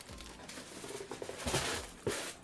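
Faint rustling of a cardboard craft-kit box and its tissue-paper packaging being handled and moved aside, with a louder rustle about one and a half seconds in.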